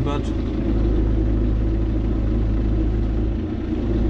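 John Deere 5070M tractor's four-cylinder diesel engine running steadily as the tractor drives across a field, heard from inside the cab. The deep rumble briefly drops a little about three and a half seconds in.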